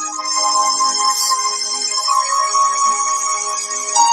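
Worship music: a keyboard pad holding sustained chords, with no beat.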